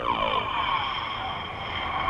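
A sustained film sound effect: a cluster of falling sweeps at the start settles into a steady, high, wavering tone.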